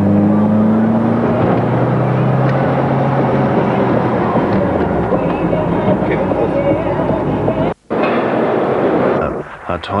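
Ferrari engine heard from inside the cabin, pulling up through the revs with a rising note, then running steadily under heavy road and wind noise. The sound cuts out briefly near the end.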